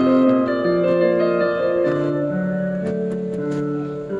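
Background piano music: sustained notes changing every half second or so.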